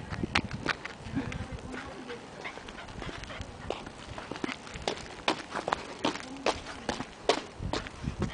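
Footsteps on asphalt: light, irregular clicks and taps from small dogs' paws and claws as they walk on leash, mixed with the walker's steps.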